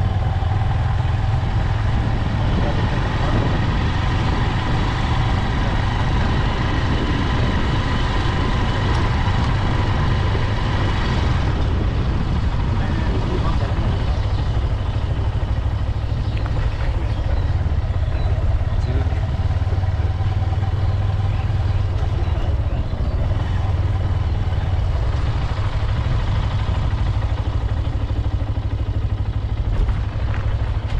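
Motorcycle engine running steadily while riding, with a strong, even low rumble of road and wind noise.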